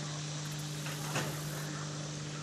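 A steady low hum over faint background noise, with a brief faint sound about a second in.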